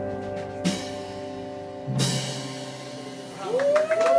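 A live band's final chord rings out on electric guitars while the drum kit strikes two final cymbal hits, about two-thirds of a second and two seconds in. Near the end a voice rises in a whoop as the audience begins to cheer.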